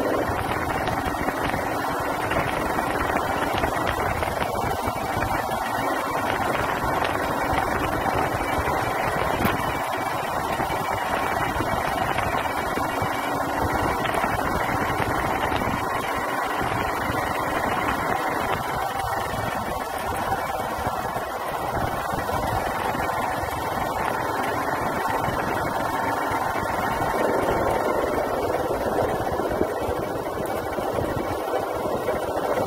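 Engine of a moving two-wheeler running steadily, with wind and road noise heard from the rider's seat.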